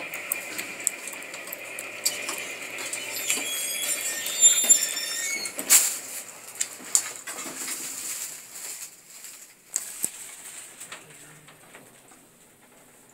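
Lift car running between floors: a steady high hum that stops about six seconds in, with scattered clicks and brief high squeaks, the sharpest clicks coming between about four and six seconds in.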